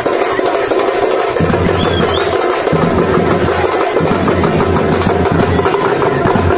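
Loud percussion-led music: drums struck in a steady driving beat over a low bass line that cuts in and out.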